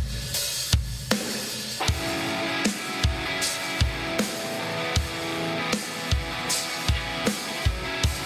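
A software drum loop playing a steady rock beat of kick, snare, hi-hat and cymbal, about one kick every three-quarters of a second, set as a guide track to keep time. Electric guitar chords ring over it.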